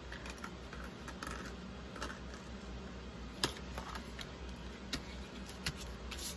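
Paper and card being handled on a tabletop: faint rustles and light taps, with three sharp clicks in the second half, over a steady low hum.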